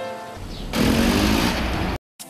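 A jeep's engine running loudly as it drives up, rising out of soft background music and cutting off abruptly at the end.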